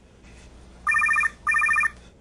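A phone ringing: a double ring of two short bursts of rapid electronic trilling, starting about a second in.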